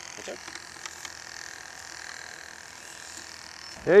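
Small battery-powered bait-bucket aerator pump (Bubble Box portable air pump) running with a steady electric buzz and a thin high whine.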